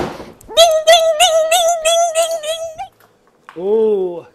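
A short whoosh, then a single sung 'ahh' note held for about two seconds with a slight vibrato, followed by a brief spoken phrase near the end.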